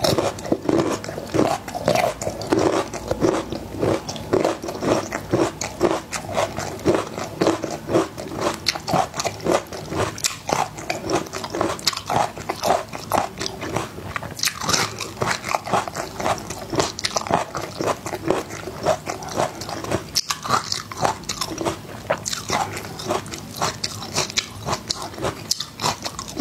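Close-miked chewing of whole peeled garlic cloves: steady, rapid crunching, crisper and sharper about halfway through and again near the end.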